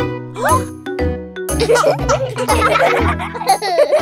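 Bouncy children's song backing music with a steady bass line. From about a second and a half in, a burst of cartoon children's laughing and squealing voices sounds over it.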